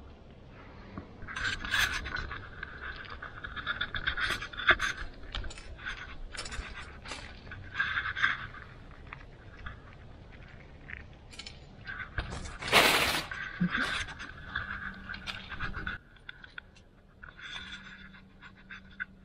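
Sunflower seeds rattling and scraping against the stone slab as chipmunks scrabble through the seed pile, in irregular clicking bursts, with one louder scrabble about two-thirds of the way in.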